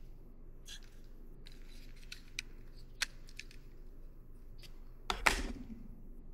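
Light plastic clicks as a wireless-earbud charging case is handled, then a louder knock with a short scrape about five seconds in as the case is set down on the desk.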